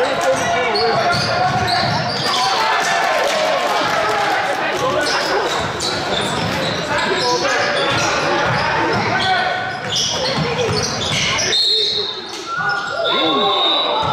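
Basketball being dribbled on a hardwood gym floor during play, a run of bounces with echo from a large hall, over indistinct voices of players and spectators.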